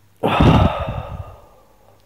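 A man's long, heavy, weary sigh. It starts a moment in and trails off over about a second, with the breath buffeting the microphone at its start.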